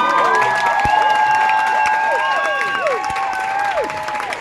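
Audience cheering and applauding, with several overlapping long, high-pitched whoops that each fall away in pitch at the end, over steady clapping.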